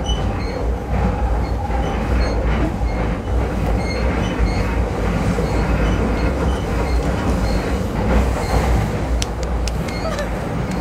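Interior of a moving electric commuter train: the steady rumble of wheels and running gear through the carriage, with faint regular ticks above it and a few sharp clicks near the end.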